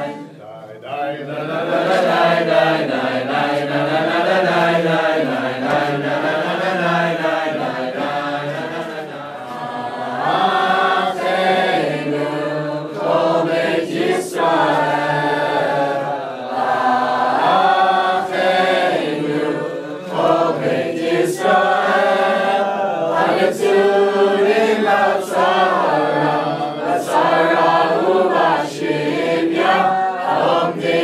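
A group of young men and women singing together in unison, a slow song with long held notes.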